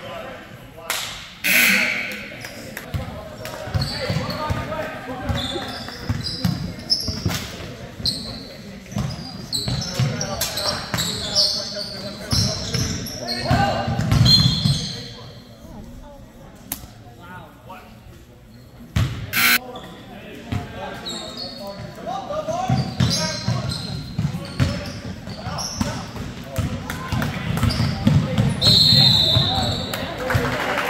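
Basketball game sounds echoing in a gymnasium: a ball bouncing on the hardwood floor, sneakers squeaking and players and spectators calling out. It goes quieter for a few seconds about halfway through, then a sharp knock and the play noise picks up again.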